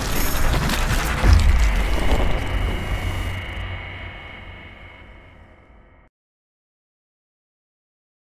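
Logo-animation intro sting: a dense rush of crackling, whooshing sound effects with a deep hit about a second in, the loudest moment, then a long ringing tail that fades away and cuts to silence about six seconds in.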